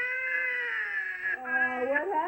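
Toddler crying hard: one long wail that slowly falls in pitch, then a second cry starts about a second and a half in.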